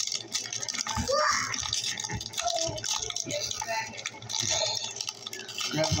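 Foil Pokémon booster pack wrapper crinkling and rustling as hands handle and open it.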